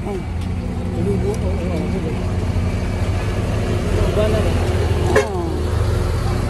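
A motor vehicle's engine idling close by, a steady low hum, with people talking around it.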